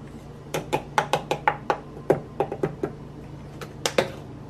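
A shaker bottle shaken over a glass jar: a quick run of about a dozen sharp taps, roughly five a second, then two more knocks near the end. A steady low hum runs underneath.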